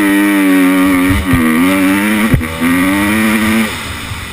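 Motocross bike engine pulling under throttle, its pitch holding then dipping sharply twice, about a second in and again past two seconds, before the throttle is rolled off near the end.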